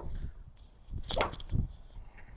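A golf iron swung through and striking the ball once, about a second in, with a short sharp click of contact.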